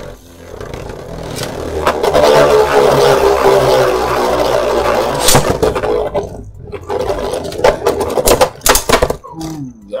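Two Beyblade Burst spinning tops whirring and scraping around a plastic stadium under a clear domed cover: a steady drone that builds over the first couple of seconds, with sharp clacks as the tops collide, one about halfway through and several more in the second half.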